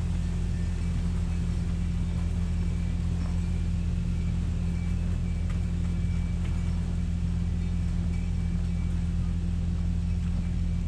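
Mini excavator's diesel engine idling steadily, a constant low hum.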